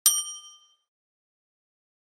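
Notification-bell sound effect: a single bright ding that rings briefly and fades out in under a second.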